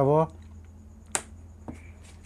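A sharp click about a second in and a fainter click just after, from a meter test probe tapping the solder side of a CRT television's circuit board, over a steady low hum.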